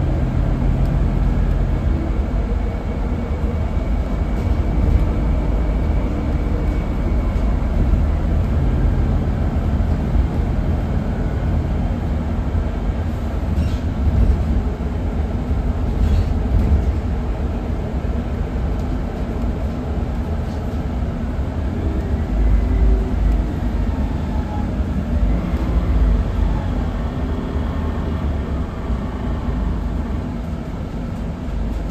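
Scania N280UB CNG city bus under way, heard from inside the passenger cabin: a steady low engine and road rumble with faint whining tones that come and go, easing slightly near the end.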